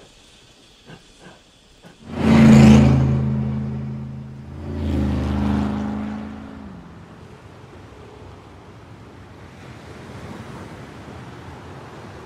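A car's engine noise rushes in loudly about two seconds in, swells a second time with its pitch dropping, then settles into a steady low rumble and hiss.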